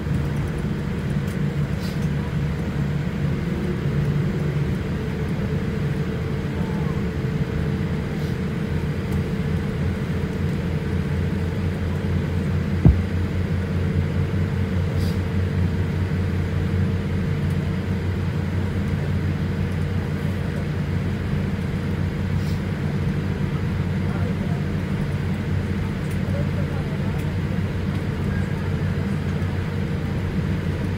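Jet airliner cabin noise while taxiing: a steady low rumble from the engines at idle with a faint steady hum, and a single sharp knock about 13 seconds in.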